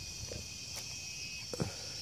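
Steady high-pitched chorus of insects, with a couple of faint soft knocks from footsteps on the bank.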